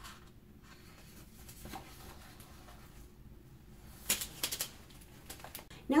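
Quiet room tone, then a short cluster of clicks and rustles about four seconds in from a hardcover picture book being closed and put aside.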